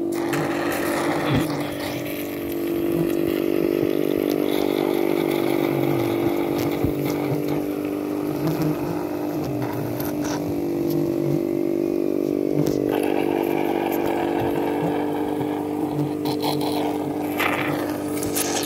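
Small electric suction pump running with a steady hum, drawing honey from stingless bee honey pots through a hose.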